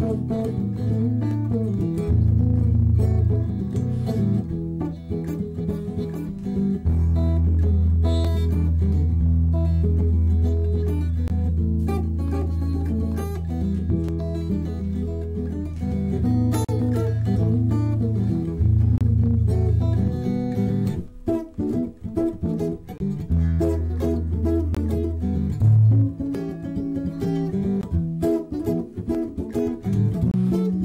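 Instrumental stretch of a blues recording: plucked guitar lines over held low bass notes, with no vocals.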